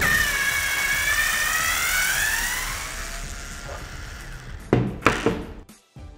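Makita cordless screwdriver motor running under load, a whine that wavers in pitch and fades out after about three seconds. Two sharp knocks near the end as the drill body is handled.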